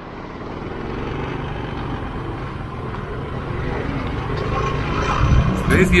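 Riding noise on a two-wheeler: wind on the action camera's microphone over a steady low engine and road hum, growing louder over the first second.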